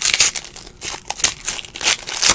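Foil wrapper of a Donruss baseball card pack crinkling as it is pulled open by hand, a run of irregular crackles, loudest in the first moment.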